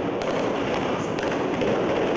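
Scattered sharp gunshot pops, about a second apart, over a steady rushing noise.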